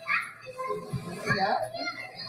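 Young children chattering and a woman's voice answering "yeah", with music underneath.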